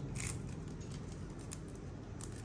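Hands handling the thin, leafy branches of a small bonsai, with one short crisp snap or rustle of twig and leaves about a quarter second in, over a steady low hum.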